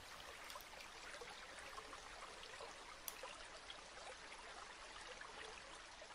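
Faint, steady trickling of a stream, a nature-sound water ambience.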